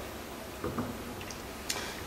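A few faint clicks of a stemmed tasting glass being handled and set down on a serving tray, over quiet room tone, with one sharper click near the end.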